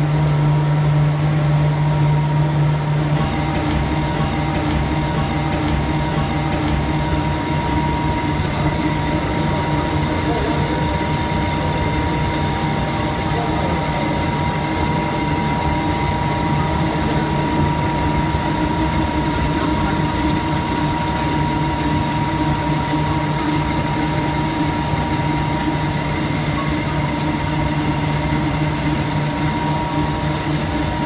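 Havesino DFQ3500 kraft paper slitter rewinder running at speed: the paper web runs over the steel rollers and through the circular slitting knives. It makes a loud, steady machine noise, a low hum with a higher whine and a hiss over it. The hum eases a little and the hiss brightens about three seconds in.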